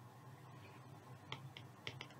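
Faint clicks of a stylus tapping on a tablet screen while handwriting, three of them in the second half, over near-silent room tone.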